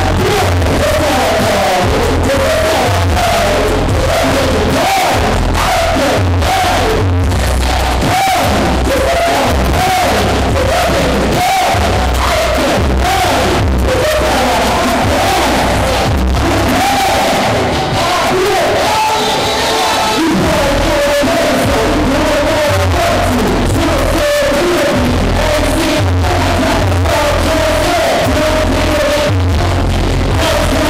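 Loud hip-hop music with heavy bass over a club sound system, with crowd voices over it.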